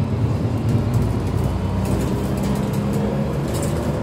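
A double-decker bus's engine running steadily, heard from inside the lower-deck cabin as a continuous low drone.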